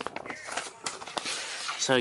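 Sheets of paper rustling and sliding over each other as they are gathered up off the floor, with scattered small ticks.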